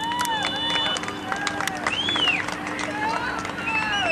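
Several people shouting and yelling over one another, their loud calls rising and falling in pitch.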